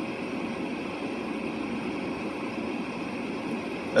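Steady hum and hiss of a car running with its ventilation on, heard from inside the cabin.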